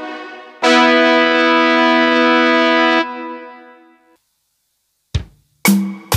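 Electronic arranger keyboard playing the intro of the song: a short chord, then a chord held for about two and a half seconds that dies away, a pause of about a second, then short notes near the end.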